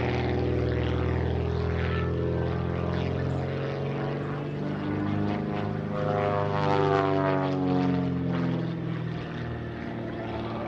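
Super Chipmunk aerobatic plane's piston engine and propeller droning steadily overhead during a manoeuvre. The pitch shifts and sweeps in the second half as speed and power change, and it is loudest about seven seconds in.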